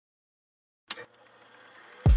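Turntable stylus set down on a vinyl record: one sharp click about halfway through, then faint surface hiss and crackle that slowly grows louder.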